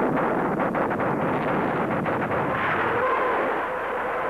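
Battle sound of artillery and gunfire: a continuous din of rapid, closely packed shots and blasts over a heavy rumble.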